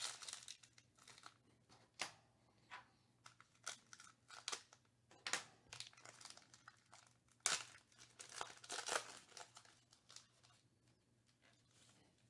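Foil wrapper of a trading-card pack crinkling and tearing as it is opened by hand: faint, short, irregular crinkles and rips, dying away about two seconds before the end.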